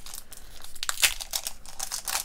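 Foil wrapper of a Pokémon TCG booster pack crinkling in the hands as it is torn open, with a sharper crackle about a second in.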